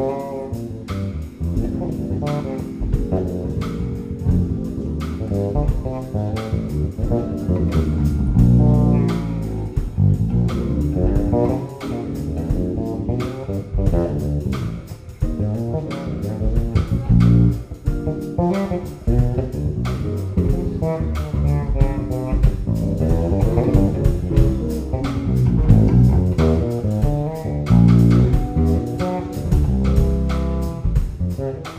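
A live jazz band playing, with electric bass guitar to the fore over drum kit and keyboards.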